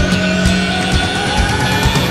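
Live band playing an instrumental passage: a steady drum beat under a slowly rising electronic sweep.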